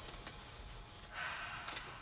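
A person breathing in through the nose, one soft sniff lasting about half a second, a little over a second in, smelling a scented bath tea bag.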